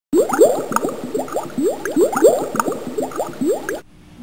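Bubbling, gurgling water: a quick, uneven run of short rising bloops that stops abruptly near the end.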